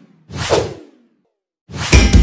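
Whoosh sound effects in an animated intro: one short swoosh about a third of a second in, then near the end a louder swoosh that lands on a deep boom.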